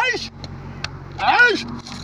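Short wordless vocal calls from a man, each rising then falling in pitch: one at the very start and another about a second and a half in, over a steady low hum with a few faint clicks.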